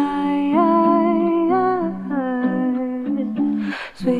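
Female voice humming a slow wordless melody, several layered parts held in harmony and stepping between sustained notes. A short breathy hiss comes near the end.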